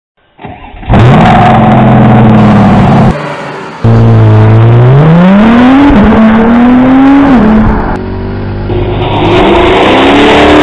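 Sports car engines in a series of abrupt cuts. A steady engine note runs at first. After a brief break, an engine revs up as a car accelerates, its pitch climbing, dropping at a gear change about six seconds in and climbing again. Near the end another engine note takes over.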